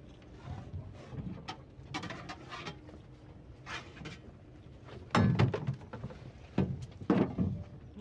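Handling noise as a fish net is unhooked from a quay wall and lifted toward a small boat: rustling and scraping with scattered knocks, the loudest about five and seven seconds in.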